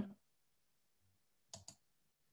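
Near silence, with two faint, quick clicks about a second and a half in.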